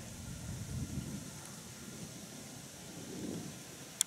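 Faint outdoor background with low wind rumble on the microphone, and two soft, indistinct swells partway through.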